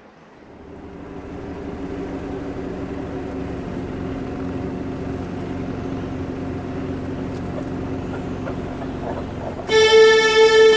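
A car's engine running as it drives, a steady low drone that grows louder over the first two seconds and then holds even. Music starts suddenly near the end.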